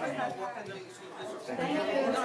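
Indistinct chatter of several people talking at once in a room, with no single voice standing out.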